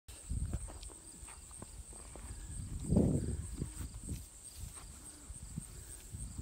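Wagyu cow and nursing calf shuffling and grazing in pasture grass: soft, irregular rustles and knocks, with one louder low burst about halfway through.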